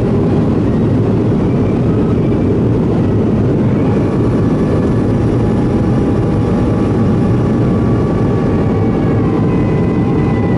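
Boeing 737-800 cabin noise on approach with flaps out: a steady, loud roar of airflow and CFM56 jet engines heard from a seat by the wing. Faint engine whine tones come in about four seconds in and shift in pitch near the end.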